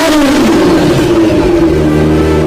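Motorcycle engine with a newly fitted aftermarket exhaust, loud from the first instant: a rev that falls back over the first half second, then steady running.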